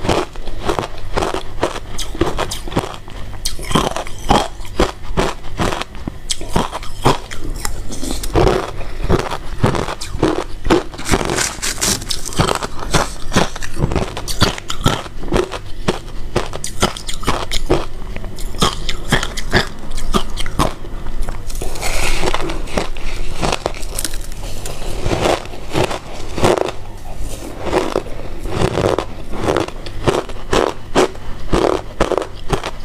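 Close-miked chewing and crunching of mouthfuls of shaved ice: a dense, continuous run of small crisp crunches.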